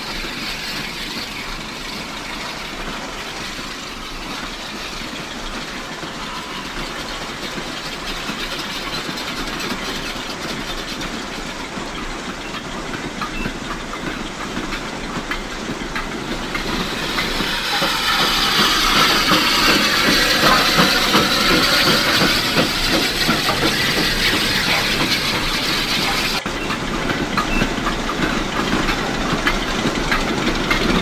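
A goods train running behind a 700 class steam locomotive, a steady train sound with steam hiss that grows louder about seventeen seconds in as the train draws nearer. The sound changes abruptly about twenty-six seconds in.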